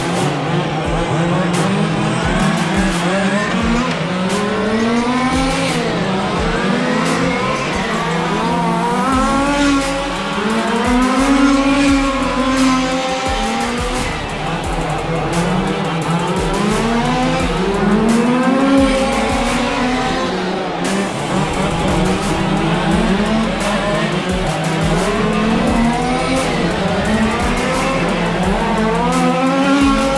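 Several radio-controlled 1/10-scale touring cars racing round a circuit, their motors overlapping and rising and falling in pitch again and again as they speed up and slow down.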